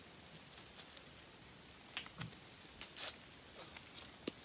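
A one-inch webbing strap being handled and pulled against a tree trunk's bark: faint, with a few short scratchy scrapes in the second half.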